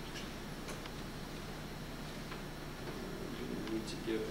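Faint, irregular clicks of laptop keys being typed, five or so in four seconds, over a steady low room hum.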